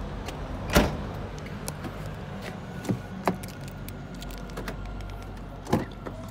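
Car door handling on a Porsche Cayenne: a loud thump about a second in, a few lighter clicks and knocks, then a latch clunk near the end as a rear passenger door is opened, over a steady low hum.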